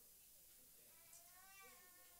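Near silence: room tone, with a faint high-pitched wavering vocal sound starting about a second in.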